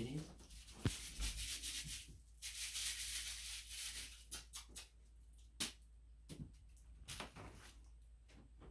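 Crinkly rustling and scratching, loudest for a second or two just before the middle, then a few sharp clicks and taps as it quietens.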